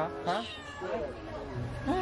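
Domestic cat meowing, several short calls.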